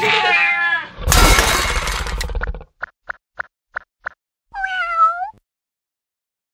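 Cartoon sound effects: a short wavering pitched call, then a loud noisy burst, six quick light blips about a quarter second apart, and near the end a cartoon cat's meow that dips and rises.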